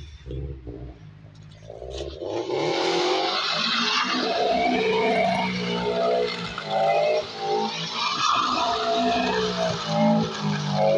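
Scion FR-S flat-four engine revving hard, rising and falling in repeated swells, with tyres squealing as the car spins doughnuts. It starts about two seconds in, after low rumble and wind on the microphone.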